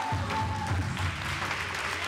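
Dance music with a pulsing bass line and a held note that ends under a second in, with a noisy hiss of clapping in the later part.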